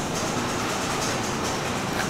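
Steady, even rushing noise of a commercial bakery kitchen's ventilation and oven fans, with no other event.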